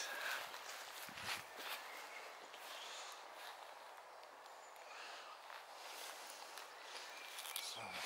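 Quiet outdoor air with faint footsteps and rustling through long grass, and one short low sound about a second in.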